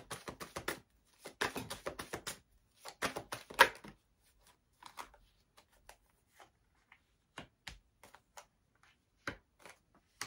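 A tarot deck being shuffled by hand: three quick bursts of rapid card clicks over the first four seconds. After that come scattered single taps and snaps as cards are handled and laid down on the cloth-covered table.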